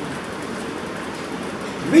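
Steady, even background noise in a classroom, a continuous rush with no distinct events, during a pause in speech; a man's voice begins right at the end.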